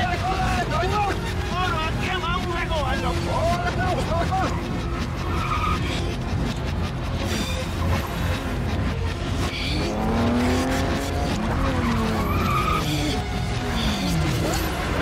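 Car-chase film soundtrack: a steady heavy rumble of truck and car engines and road noise. A man shouts over it in the first few seconds. About ten seconds in, an engine's pitch slides downward as a vehicle passes.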